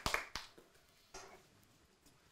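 The last few hand claps of audience applause dying away within the first half second, then near-silent room tone.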